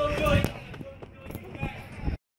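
A brief muffled voice at the start, then low rustling with a few soft knocks.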